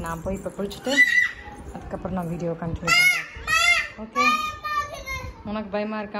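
A toddler's high-pitched playful vocalising: a short call about a second in, a couple of sharp rising squeals about three seconds in, then a longer drawn-out call.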